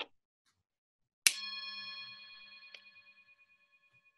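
A singing bowl struck once with a wooden spoon about a second in, ringing with several steady tones that fade away over about two seconds, with a light click partway through the ring.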